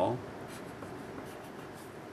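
Wooden pencil writing on paper: a soft, steady scratching as a number and arrows are drawn.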